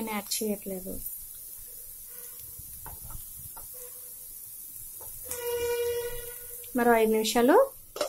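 Diced beetroot and carrot frying in oil in a non-stick pan: a faint, even sizzle with a few light ticks. A steady pitched tone sounds for about a second and a half past the middle.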